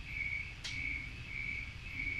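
A cricket chirping steadily, about two chirps a second, over a low background rumble. One short click sounds a little over half a second in.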